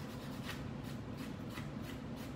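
A nail buffer block rubbed back and forth over a dip-powder nail: a faint series of rasping strokes as the coat is smoothed after filing.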